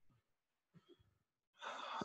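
Near silence, then a man's faint intake of breath near the end.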